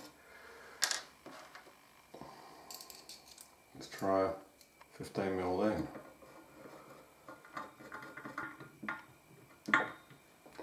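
Small screws and a screwdriver clicking and ticking against a circuit board and metal heatsink as screws are tried in tapped holes, with one sharp click about a second in and scattered light ticks near the end. Two short hummed vocal sounds come about four and five seconds in.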